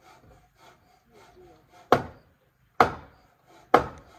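Chopping on wood: three heavy, sharp strikes about a second apart, from about two seconds in, with lighter knocks between them.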